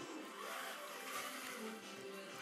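A small radio-controlled toy car's electric motor running as it drives across a tiled floor, over background music.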